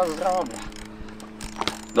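Mini BMX rolling on concrete, its rear-hub freewheel buzzing with a fast ratchet ticking, with one short knock near the end as the bike comes down from a small bunny hop.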